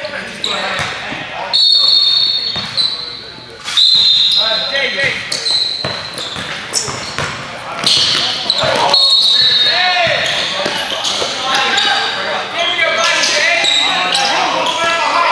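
Basketball game sounds in a large, echoing gym: the ball bouncing on the hardwood, short high squeaks from sneakers, and players and spectators shouting.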